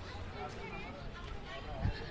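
Outdoor street ambience: background voices of people talking over a steady low rumble, with a brief low thump near the end.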